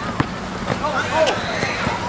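A few sharp thuds of a basketball striking an outdoor asphalt court during play, with people's voices in the background.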